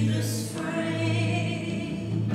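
Live church worship music: singers sing a hymn over a band, with a sustained low bass note underneath.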